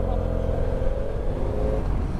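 BMW F800 GS parallel-twin motorcycle engine pulling away from a stop under heavy low wind rumble. It holds a steady engine note that fades out near the end.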